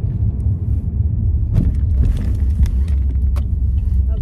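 Steady low rumble of a car on the move, heard from inside the cabin, with a brief rush of noise and a few faint clicks around the middle.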